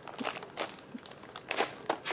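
Packaging crinkling and rustling as it is handled, in a few short irregular crackles, the loudest about one and a half seconds in.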